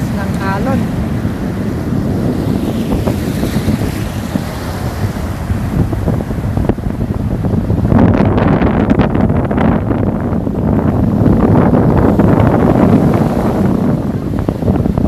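Ocean surf breaking and washing in the shallows under heavy wind noise on the microphone, which gusts louder from about eight seconds in.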